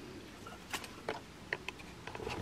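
Faint handling sounds: a few light clicks and rustles as glitter shamrock picks are handled and tucked into a dry grapevine wreath, starting just under a second in.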